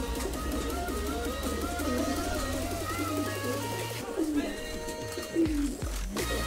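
Domestic pigeons cooing, many low rising-and-falling coos overlapping, over background music with a steady bass.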